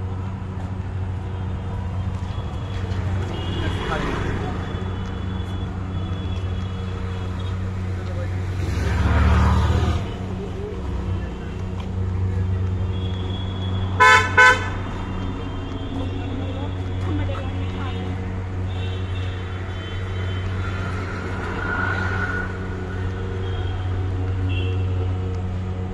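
Road ambience with a steady low hum and a vehicle passing about nine seconds in, then a car horn honking twice briefly, loudly, around the middle.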